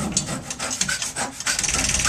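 Free-improvised alto saxophone played with extended technique: mostly unpitched breathy noise and short irregular clicks rather than held notes, with drums and percussion.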